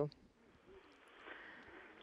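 Faint steady hiss on a voice communication link, with the tail of a spoken word at the very start.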